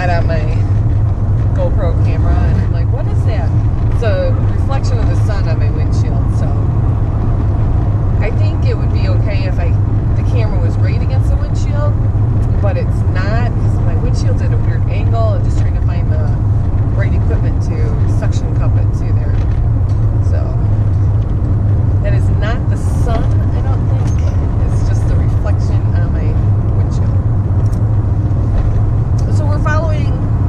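Steady low drone of a van's engine and tyres heard from inside the cabin while driving, with scattered light clicks and rattles.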